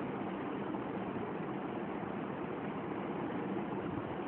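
Steady, even background hiss with no other events.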